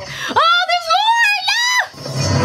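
A very high-pitched voice giving several rising and falling squealing cries, which cut off sharply just before the end.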